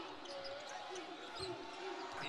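Faint sound of a basketball being dribbled on a hardwood court in replayed game broadcast audio, with repeated bounces a few tenths of a second apart.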